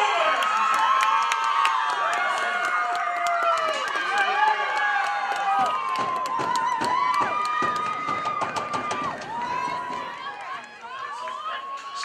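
A crowd cheering and screaming with high-pitched voices and hand clapping for a goal just scored in a soccer game. The noise dies down over the last couple of seconds.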